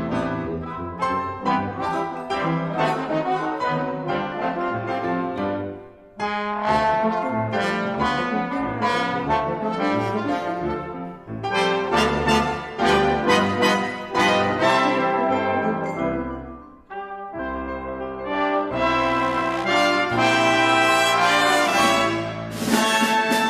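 Ten-piece brass ensemble playing in phrases, with trumpets and trombones. The music breaks off briefly about six seconds in and again near seventeen seconds, then ends on a loud, sustained passage.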